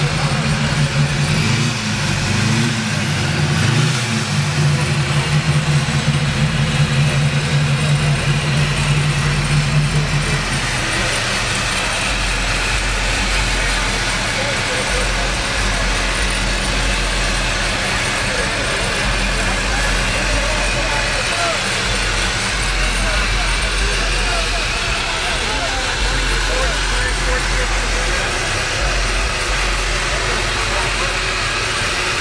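Engine of a ProCharger-supercharged 1967 Pontiac LeMans idling steadily. About ten seconds in, its hum drops to a deeper, lower note.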